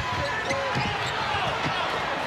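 Basketball arena crowd noise during live play, with the ball bouncing on the hardwood court.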